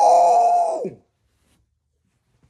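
A man's loud, high-pitched, drawn-out vocal exclamation held on one note for about a second, then cut off suddenly.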